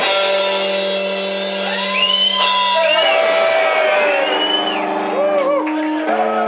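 Electric guitars held on long ringing notes after the drums stop, the notes shifting pitch a few times, with gliding whoops from the audience over them.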